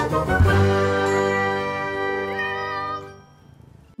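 Short channel-logo jingle: a bright, bell-like chord rings and sustains, then fades out about three seconds in.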